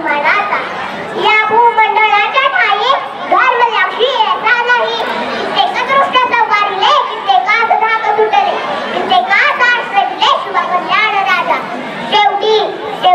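A young girl speaking loudly into a handheld microphone, delivering a Marathi speech with wide rises and falls in pitch.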